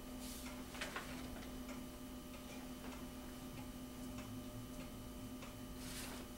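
Quiet meeting-room tone with a steady low hum and faint, regular ticking. Paper rustles a little before a second in and again near the end.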